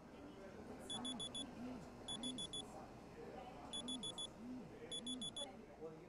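Alarm beeping in the classic digital pattern: quick bursts of four high beeps, repeating about every one to one and a half seconds. It sounds from the start of the intro's phone alarm.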